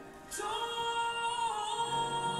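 A woman singing a long held note that begins about half a second in after a brief breath, the pitch shifting slightly near the end.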